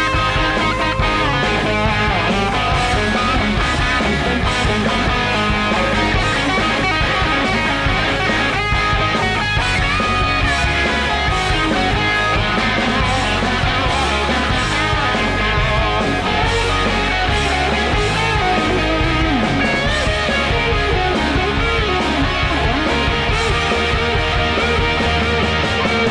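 Instrumental break of a rock song, with electric guitars playing and no vocals.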